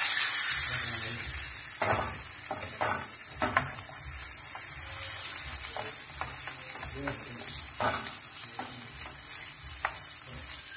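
Chopped onion and a bacon-wrapped pork loin medallion sizzling in olive oil in a non-stick frying pan, loudest as the meat has just gone in and easing to a steadier sizzle. A wooden spoon knocks against the pan now and then.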